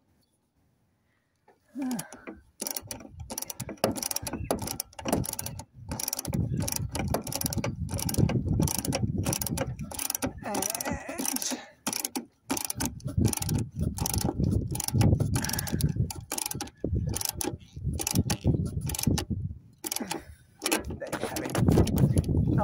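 A ratchet spanner clicks in quick runs as it winds a nut down a threaded tie-down rod onto a steel plate, with short pauses between runs. It starts after near silence about a second and a half in.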